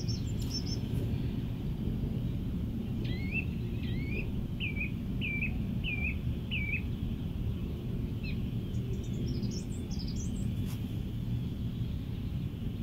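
A bird calling over a steady low background rumble: a run of about six short, rising notes a little over half a second apart in the middle, then higher, quicker chirps near the end.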